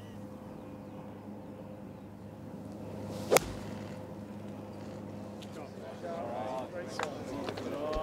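Golf club striking the ball on a tee shot: one sharp crack about three seconds in.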